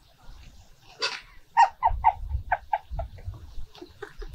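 A young woman laughing heartily: a breathy outburst about a second in, then a run of short 'ha' bursts, about three a second.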